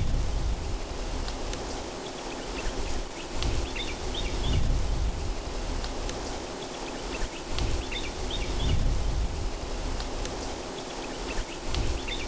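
Outdoor nature ambience: a steady hiss with slow low rumbling swells, over which a few short bird chirps come in small clusters, about a second in, near the middle and about two-thirds through.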